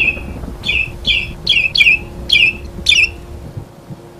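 A bird squawking: a run of about seven short, harsh calls in quick succession, stopping about three seconds in.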